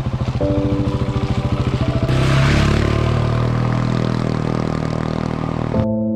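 Husqvarna 701 Enduro's single-cylinder engine running at low revs as the bike rides up, growing louder and rougher about two seconds in as it comes close.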